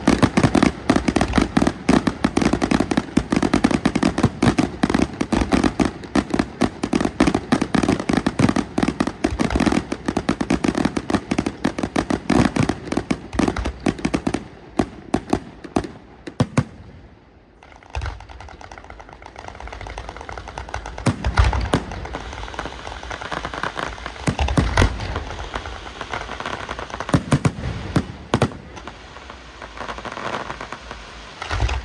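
Fireworks display: a rapid-fire barrage of sharp reports, many a second, for about the first fourteen seconds. After a short lull, aerial shells burst every few seconds with deep thumps and crackling between them.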